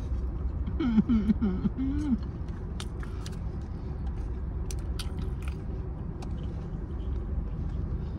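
Eating sounds: a few light clicks of a plastic spoon and chewing from a takeout container, over a steady low rumble inside a car. A short appreciative 'mm' hum comes about a second in.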